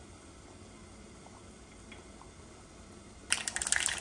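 Mustard seeds in hot oil in a small nonstick pan begin to splutter and pop suddenly about three seconds in, a dense, loud crackling as the tempering starts.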